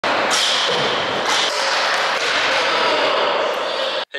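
Aggressive inline skate landing on and grinding along a metal skate park rail: a loud, continuous scraping hiss that begins abruptly, brightest in the first second and a half.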